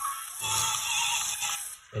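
A toy 4WD stunt RC car's built-in speaker playing its demonstration-mode sound effects: an electronic jingle with a wavering high tone, cutting off shortly before the end.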